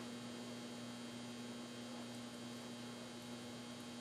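Steady electrical mains hum with a faint even hiss underneath.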